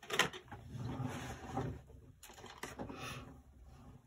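Rummaging through a desk drawer: small objects clatter and knock irregularly as they are pushed about, in a search for scissors.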